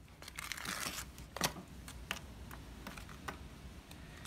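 A metal knife stirring cement-based powder into water in a plastic tub: gritty scraping and clicks of the blade against the tub, while the powder is still not taken up into the liquid. A stretch of scraping in the first second, then one sharp click about a second and a half in and a few lighter ticks.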